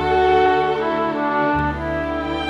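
Symphony orchestra playing a slow passage of sustained notes over a steady bass line, the melody moving to a new note about twice.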